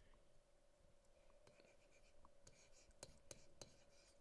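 Near silence: a stylus writing on a tablet, giving several faint taps and scratches, most of them in the second half, over a faint steady hum.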